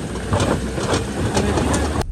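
A car driving slowly over packed snow: the engine runs under a dense crunching and clatter from the tyres, with many irregular sharp clicks.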